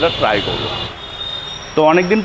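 A man speaking, with a pause of about a second in the middle filled by steady background hiss and a faint high whine; his speech resumes near the end.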